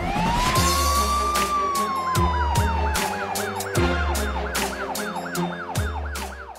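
Electronic title music for a TV programme, built around a siren-like effect. A tone sweeps up, then slides slowly down, while a fast warble repeats about three times a second over a deep bass and sharp, regular percussive hits. It cuts off suddenly near the end.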